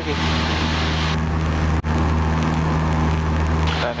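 Cessna 172P's four-cylinder Lycoming engine and propeller running steadily at climb power, heard from inside the cabin, with a momentary dropout a little under two seconds in.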